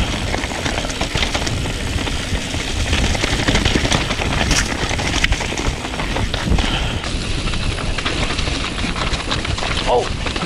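A Yeti SB140 mountain bike clattering and crunching down a rocky trail at speed, its tyres knocking over rock and gravel in a steady string of small clicks and thuds. Wind rushes over the camera's microphone throughout.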